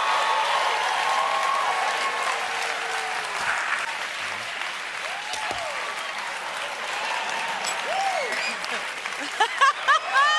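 Studio audience applauding and cheering, the applause easing a little midway, with a few whoops rising and falling over it and laughter breaking in near the end.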